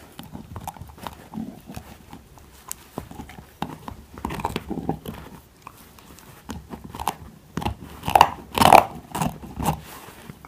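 Husky puppy gnawing on a hollow bone, its teeth scraping and clicking against it in irregular bites, with a louder run of bites about eight seconds in.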